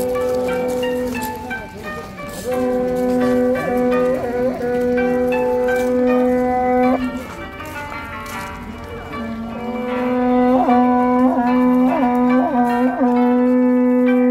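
Horagai, a Japanese conch-shell trumpet, blown in long held blasts on one low note, each several seconds long with short pauses between, the tone broken now and then by quick upward yelps in pitch.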